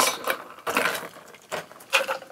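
A cocktail poured with its ice straight from a stainless steel shaker tin into a glass: ice cubes clatter against the metal tin and the glass in a few separate bursts.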